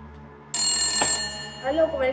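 A telephone ringing: one ring that starts suddenly about half a second in and fades out after about a second, just before the call is answered.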